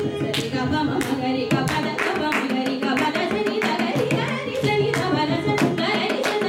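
Carnatic classical singing by a woman, accompanied by violin and mridangam, the drum striking frequently and irregularly under the voice.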